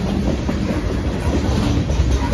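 Freight train of boxcars rolling past at close range: a steady rumble and clatter of steel wheels on the rails.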